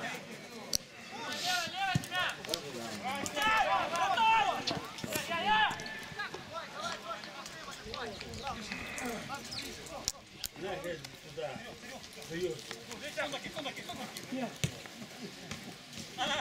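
Shouted calls from football players on the pitch, loudest in the first six seconds, with a few sharp knocks of the ball being kicked.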